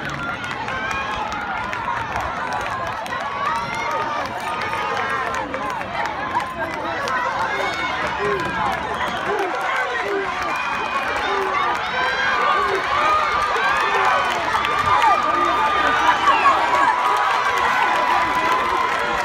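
Crowd of spectators in stadium bleachers, many voices chattering and calling out over one another with no single clear speaker. It grows a little louder in the second half.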